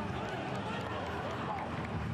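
Pitch-side sound of a football match in an empty stadium: scattered shouts and calls from players over a steady low background rumble, with no crowd noise.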